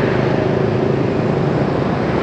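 Steady engine hum and road noise of a motorbike riding in dense city motorbike traffic, with a faint held engine tone and no sudden changes.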